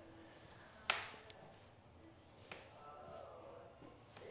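Two sharp clicks, about a second in and again about two and a half seconds in, as small tablets are snapped in half by fingertip pressure on their ends against a hard countertop.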